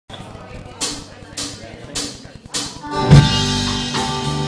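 A live band's count-in: four sharp, evenly spaced clicks a little over half a second apart, then the full band of guitars, bass, keyboard and drum kit comes in together on a loud first beat about three seconds in and keeps playing.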